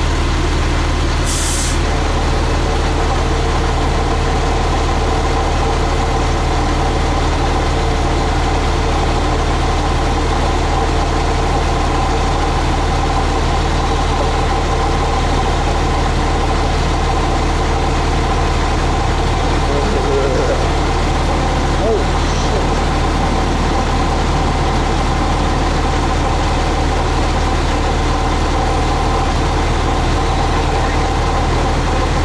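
Fire truck engine idling, a steady drone throughout, with a short hiss about a second in.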